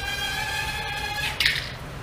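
A VK330 micro drone's small brushed motors and propellers whine at one steady pitch during an auto landing. The whine cuts off a little over a second in, and a brief clatter follows as the drone touches down and throws a propeller.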